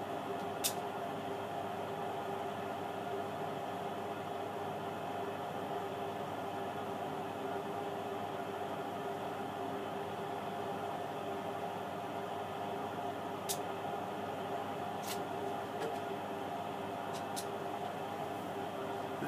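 Steady background hum from a washing machine running at full spin, with a sharp click just under a second in as the mains socket is switched on. The faulty power supply stays silent, with no bang, and a few faint clicks come near the end.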